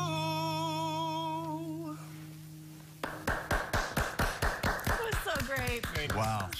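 A man ends a song on a long held note with vibrato over a ringing acoustic guitar chord, fading out about two seconds in. From about three seconds in, a small group claps in steady applause.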